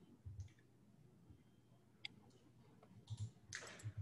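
Near silence with a few faint clicks of a computer mouse as the lecture slide is advanced; the sharpest click comes about two seconds in, with a few soft noises near the end.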